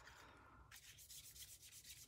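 Faint scrubbing of a wet water-brush (Aqua Painter) rubbing ink in a plastic ink pad lid and across shimmery white cardstock. It picks up into a run of quick short strokes a little under a second in.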